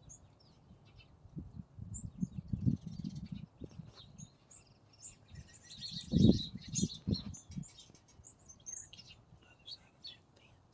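Small songbirds chirping around a feeding station, many short, high calls scattered throughout. The calls come thickest between about five and seven seconds in. Low bumps on the microphone come and go, the loudest about six seconds in.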